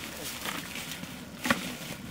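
Footsteps and rustling on a snowy, brushy bank, with one sharp knock about one and a half seconds in.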